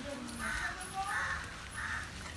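Three short, harsh calls about two-thirds of a second apart.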